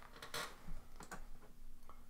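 Faint handling noise as over-ear headphones are put on: a brief rustle about a third of a second in, then a few light clicks, over a faint steady hum.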